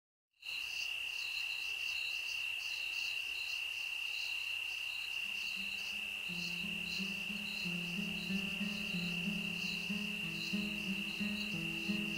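Crickets chirping: a steady high trill with a faint pulsing chirp above it. About five seconds in, a slow, low melody of held notes enters beneath them, the quiet opening of the recording.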